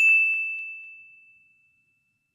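A single bell ding sound effect: one clear, high ringing tone struck once, fading away over about a second and a half.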